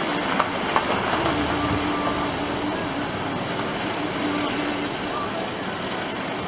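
Steady road and engine noise of a Hyundai i20 driving slowly, heard from inside the car, with a faint low hum that comes and goes.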